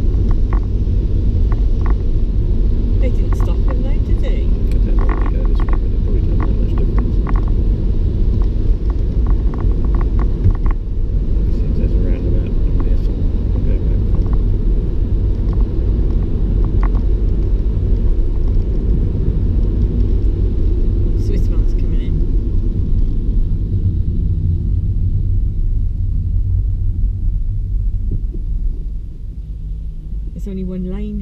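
Steady low rumble of road and engine noise heard inside a car driving on a wet road, easing off a little near the end as the car slows in traffic.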